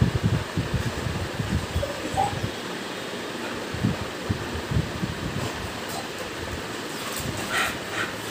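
Pit bull panting with its mouth open, with scattered brief low thumps.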